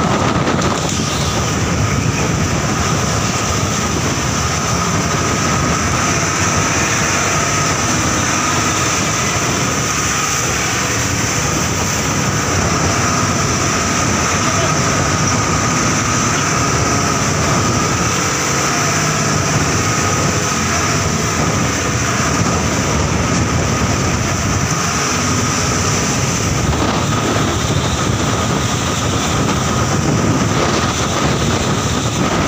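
Motorized outrigger boat's engine running steadily under way through rough sea, with wind buffeting the microphone and the noise of the waves.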